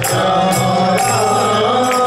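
Sankirtan: voices chanting the names of Krishna to a harmonium's held notes, with a mridanga drum and metallic jingling strikes keeping a steady beat.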